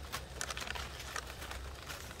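Scissors snipping the dry stalks of green onion seed heads, with a paper bag crinkling: a few faint, short clicks and rustles.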